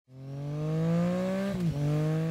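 A high-revving vehicle engine accelerating, its pitch climbing steadily, then dropping sharply about one and a half seconds in as it shifts up a gear, and climbing again.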